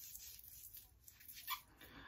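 Faint soft rubbing of hands spreading lotion over bare forearms, with one brief small sound about one and a half seconds in.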